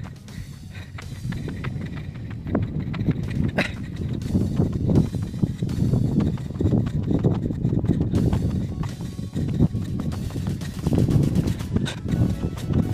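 A jogger's running footsteps on a packed dirt track, a steady rhythm of low thuds.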